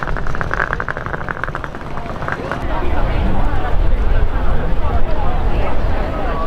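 Wheels of a rolling suitcase rattling rapidly over cobblestones for the first two seconds, over a crowd chattering; a steady low rumble fills the second half.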